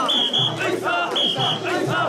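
Crowd of mikoshi bearers chanting in rhythm while carrying a portable shrine, with a whistle blown in pairs of short high blasts about once a second to keep the beat.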